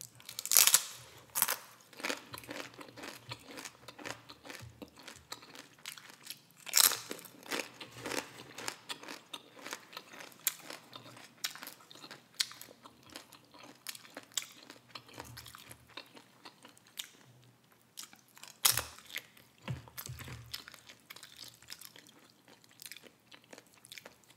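Tortilla chips dipped in cup noodles being bitten and chewed close to the microphone. Loud crunches come about a second in, around seven seconds and near nineteen seconds, with a steady run of smaller chewing crunches between.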